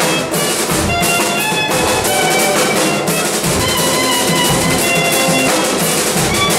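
A live student band playing an instrumental stretch of a vallenato song: a drum kit keeping a steady beat under held melody notes.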